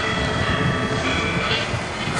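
Steady low rumble and hiss of outdoor background noise, with a faint steady high-pitched tone running through it.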